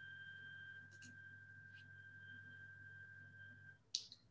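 Near silence: a faint low hum and a faint steady high-pitched tone, which stops shortly before a single short click at the end.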